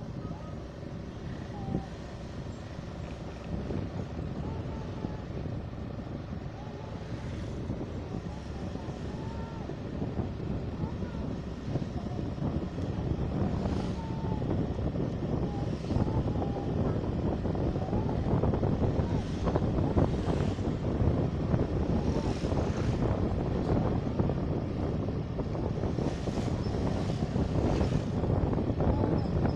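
Motorcycle ride heard from the rider's own microphone: the engine running under way with road and wind noise on the microphone, growing gradually louder.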